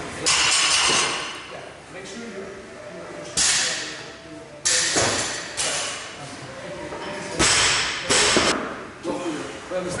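Barbells and weight plates knocking and clanking on the gym floor about seven times, each hit sharp and then fading in the echo of a large hall, three of them close together near the end.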